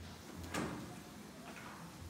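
NanaWall folding glass door panels being pushed along their track: a sharp knock about half a second in, and a fainter click near the end.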